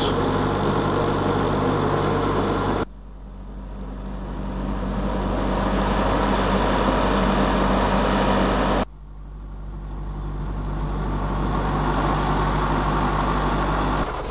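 Sailboat's engine running steadily while under way: a low hum under a steady hiss. The level drops sharply twice and swells back over a few seconds each time.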